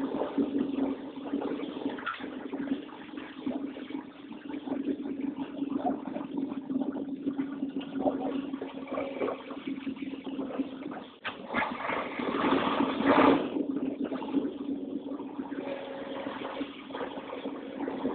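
A truck engine running at low speed, a steady drone as the vehicle rolls slowly, getting louder for a couple of seconds just past the middle.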